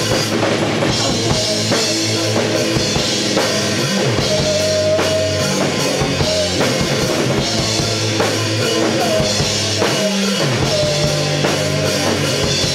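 A rock band playing live on a drum kit and electric guitar, loud and continuous.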